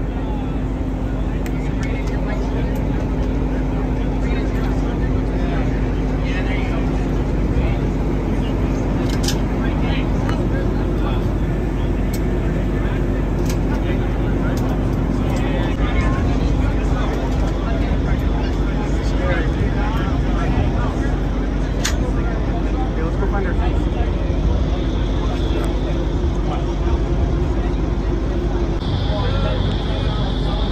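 Indistinct voices of people talking over a steady low machine hum, with a few sharp clicks.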